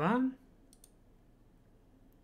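Two faint mouse-button clicks in quick succession, just under a second in.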